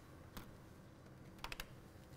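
Storage-phosphor exposure cassette being closed: a faint click as the lid comes down, then a quick run of three faint clicks about a second and a half in as the lid is pressed shut.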